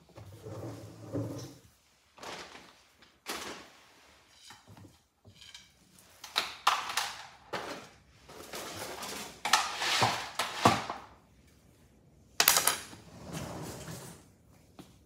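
Irregular rustles, scrapes and knocks of a person shifting on a chair and handling things beside her. The loudest is a sudden knock about twelve and a half seconds in.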